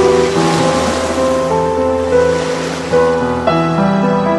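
Sea waves breaking in surf under slow background music of held notes; the surf noise fades out near the end while the music carries on.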